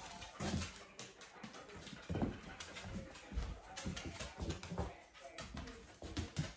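A dog moving about on a hard laminate floor, its nails clicking quietly and irregularly, with a few soft knocks.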